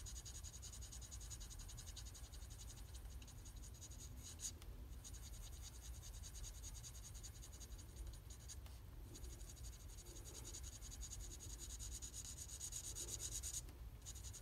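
Faint scratching and rubbing of an alcohol blending marker's tip on cardstock as an image is coloured in.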